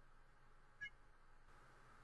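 Near silence: room tone, with one brief faint high-pitched chirp just under a second in.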